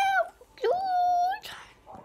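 A boy's high-pitched wordless vocalising: one held note breaking off just after the start, then a second held note lasting almost a second from about half a second in.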